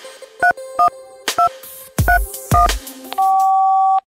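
Telephone keypad touch-tones: three short dual-tone beeps in the first second and a half, two low thumps around the two-second mark, then a steady tone held loud for the last second as the call button is pressed. A faint steady hum runs underneath.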